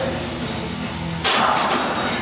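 A heavily loaded barbell gives a sudden metallic clank about a second in, its plates rattling, over faint background music.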